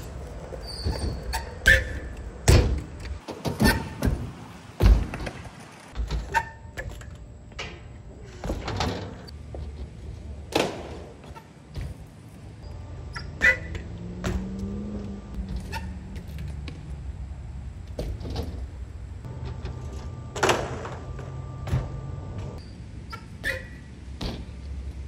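BMX bike riding skatepark ramps: irregular sharp thunks and clatters as the tyres land on and roll over the ramps, over a low steady rumble.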